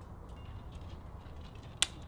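A single sharp click just before the end, over a low steady rumble.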